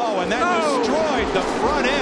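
Several voices yelling and screaming in alarm, overlapping, their pitch swooping up and down, over a low background of race noise.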